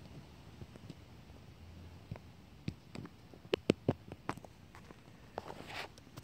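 Faint, scattered clicks and small knocks of hands fitting small plastic wire connectors together, with a cluster of sharper clicks a little past the middle.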